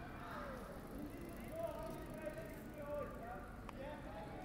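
Several passers-by talking at once over the low hum of a busy city street, heard in binaural stereo; a single sharp click comes shortly before the end.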